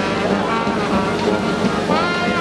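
A marching brass band playing held notes, mixed with crowd chatter.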